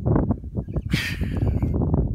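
Two men laughing, choppy chuckles with a breathy hiss about a second in, over a low rumble of wind on the microphone.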